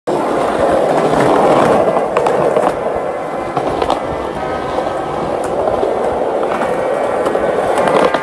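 Skateboard wheels rolling over rough concrete: a steady, gritty rumble broken by a few sharp clicks and knocks.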